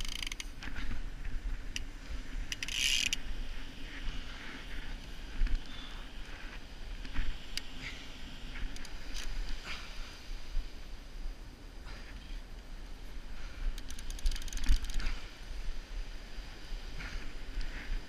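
Penn Senator 12/0 fishing reel clicking and ticking under load as a hooked shark pulls on the line, with a louder, harsher burst about three seconds in.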